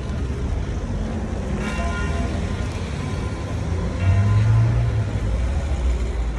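Car engine rumbling by at low speed, loudest about four seconds in, while a pitched ringing tone comes back every two to three seconds.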